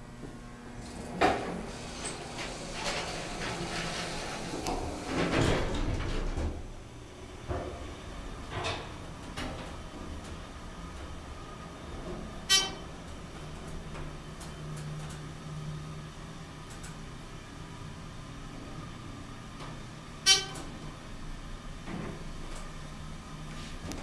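Dover hydraulic elevator: a clunk and a few seconds of door and machinery noise as the car doors close, then a low steady hum while the car travels, with a short electronic chime ringing twice, about eight seconds apart.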